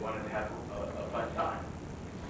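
Speech: a person talking in a room, over a steady low hum.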